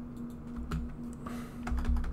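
Computer keyboard typing: irregular short key clicks, over a faint steady hum.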